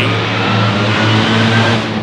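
Nitro-burning front-engine dragster with a 426 Hemi V8 running at full throttle, a loud, steady engine noise over a low drone.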